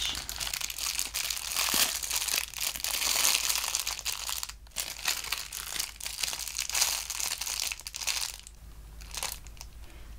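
Thin clear plastic wrapper crinkling and crackling in the hands as a squishy toy is unwrapped, in irregular handfuls; it dies down about eight seconds in.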